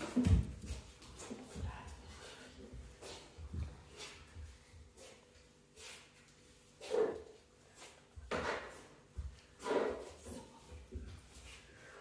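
Footsteps and shuffling of people crouch-walking on a wooden floor, with low thuds early on and a few short, louder sounds in the second half.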